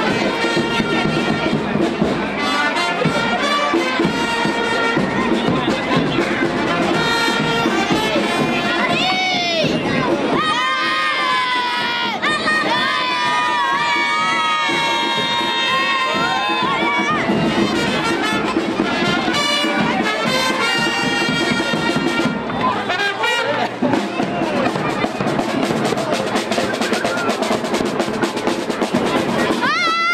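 Brass band music with children shouting and cheering over it; a long held note sounds in the middle.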